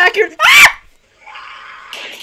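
A woman's short, high scream that rises in pitch, about half a second in, followed by a quieter breathy sound lasting about a second.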